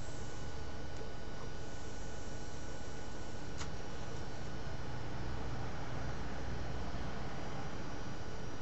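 Steady low hiss and faint hum of room and microphone noise, with one faint click about three and a half seconds in.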